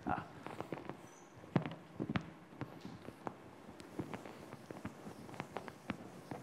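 Irregular light knocks and taps, the loudest about one and a half seconds in, as a blackboard eraser is looked for, picked up and handled at a chalkboard.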